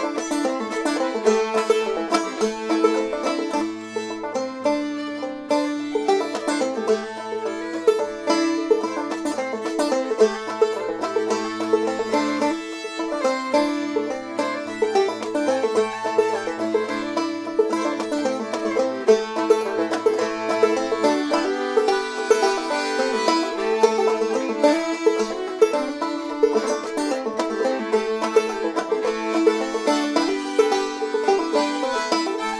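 Instrumental folk passage played together on a picked banjo, a Castagnari diatonic button accordion (melodeon) and a fiddle, with no singing. A low held note sounds under the tune for a stretch in the first two-thirds, broken by short gaps.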